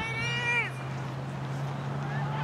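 A girl's high-pitched shout from across the field: one held call of under a second at the start that drops in pitch as it ends, over a steady low hum.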